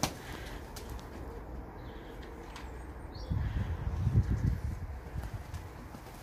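Young racing pigeons' wings flapping in a short flurry of soft, low wingbeats about halfway through, as the birds take off and land close by.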